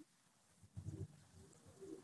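Near silence, with a few faint low sounds about a second in and again near the end.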